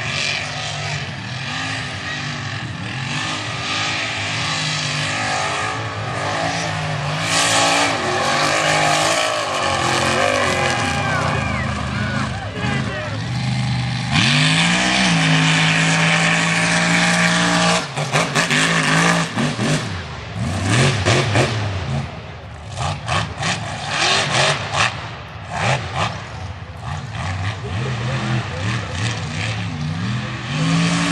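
Mega truck engines revving hard on a dirt race run. The pitch climbs and holds about halfway through, then the sound comes in short, choppy surges as the throttle is worked on and off.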